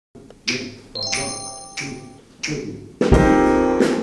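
Music: a few sharp, spaced strikes, one leaving ringing high tones, then full chords on an upright piano entering about three seconds in, louder than what came before.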